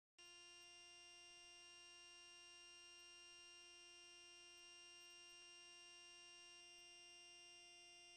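Near silence with a faint steady hum.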